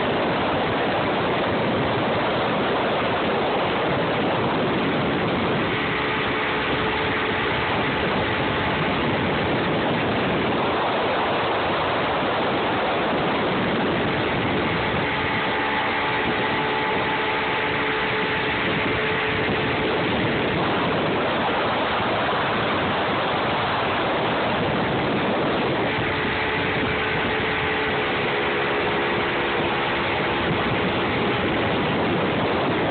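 Yamaha outboard motor running steadily at speed, under a constant rush of wind and churning wake water; the engine's whine comes through more clearly about six seconds in, again around fifteen seconds, and near the end.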